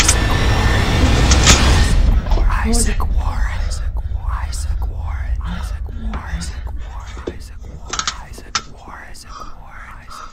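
A loud, low-heavy drone of noise that cuts off about two seconds in, followed by soft whispering voices with no clear words.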